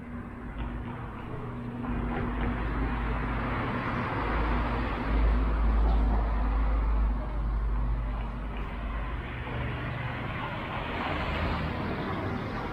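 Passing car traffic on a town main street: tyre and engine noise with a deep rumble, loudest around the middle, then easing. Another car approaches near the end.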